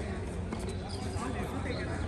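Indistinct voices of people talking around an outdoor tennis court over a steady low rumble, with a few light thuds of a tennis ball bouncing on the hard court.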